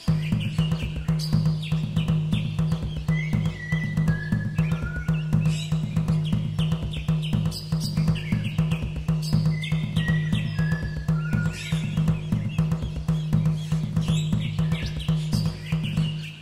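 Instrumental background music: a steady low drone under a quick, even drum beat, with a high melody that twice plays short falling runs.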